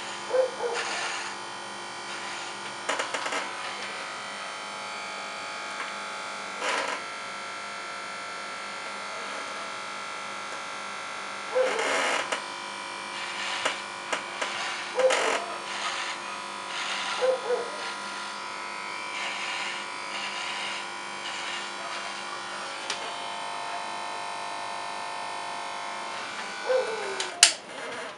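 Electric hair clipper buzzing steadily while cutting hair, with several brief louder bursts now and then and a loud burst near the end.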